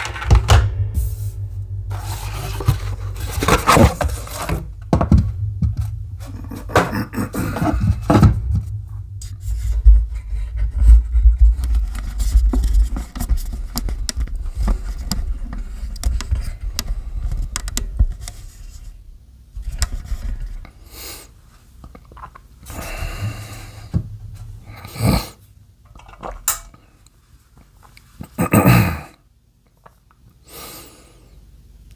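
Unboxing sounds: a cardboard box and its packing handled, with scrapes and thunks as a plastic hard drive docking station is taken out and set on a wooden desk. A heavy low rumble of handling on the desk runs through the first half or so, then separate knocks and scrapes follow.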